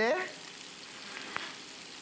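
Shrimp frying in a hot nonstick grill pan, a steady sizzling hiss, with one faint click about one and a half seconds in.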